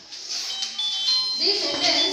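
Untranscribed voices in a classroom, likely students talking, joining in about one and a half seconds in. Short, high steady tones sound over them throughout.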